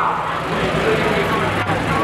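A fire brigade four-wheel-drive ute's engine running as it drives past, a steady low hum, with voices over it.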